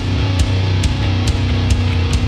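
Hardcore punk band playing live: heavy distorted guitars and bass over drums, with cymbal and drum hits a little over twice a second.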